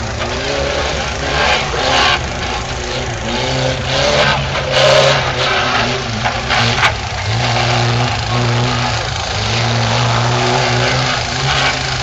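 Small 4x4 off-roader's engine revving up and down as it drives a bumpy dirt course, the revs rising and falling several times.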